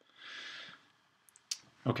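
A soft breathy hiss for under a second, then a couple of faint ticks and a sharper computer-mouse click about one and a half seconds in, as a browser window is closed.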